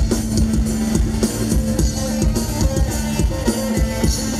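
Live band playing an instrumental passage: a steady drum-kit beat under sustained keyboard notes, with no singing.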